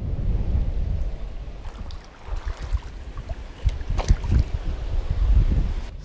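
Wind buffeting the camera microphone, an uneven low rumble, with a few sharp clicks about four seconds in.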